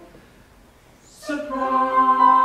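A small mixed ensemble of men's and women's voices sings a held chord that fades out at the start. After a pause of about a second, a short hiss comes, and the voices come back in on a new sustained chord.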